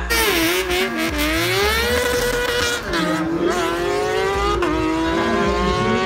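Sport motorcycle engine revving hard as the bike launches down a drag strip, its pitch climbing with two sharp drops at gear changes, about three seconds and about four and a half seconds in.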